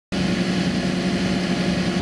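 Diesel engine of an Iveco Magirus aerial ladder fire truck running steadily, an even hum that holds one pitch.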